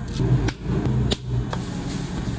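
Plastic dome lids pressed onto plastic frappe cups: three or four sharp clicks about half a second apart, over a low hum.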